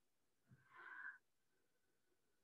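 Near silence with one faint, short breath about a second in, a speaker drawing breath between sentences with a slight wheezy whistle.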